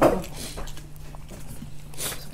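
People eating at a table: scattered small clicks and smacks of chewing. A short spoken word opens it, and a steady low hum runs underneath.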